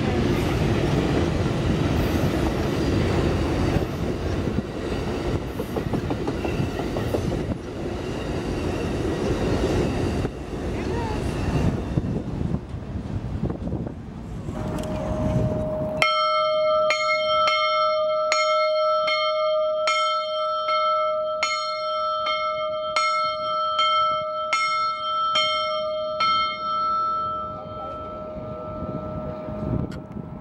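An Amtrak train of double-deck Superliner cars rolls past, with steady wheel-on-rail noise. About halfway through, a brass railroad bell hung in its iron yoke rings, struck about one and a half times a second for some ten seconds, and then its tone fades out.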